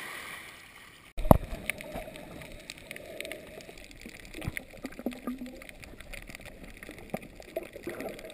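Underwater sound picked up by a snorkeller's camera: muffled sloshing and bubbling with scattered clicks and low knocks, the loudest knock coming just after a cut about a second in. Before the cut, a brief soft wash of shallow water at the surface.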